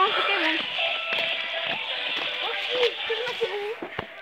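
Young voices talking indistinctly, with no clear words.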